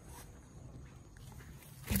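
Faint outdoor background, then near the end a sudden loud rustle and bump as large cucumber leaves brush against the microphone.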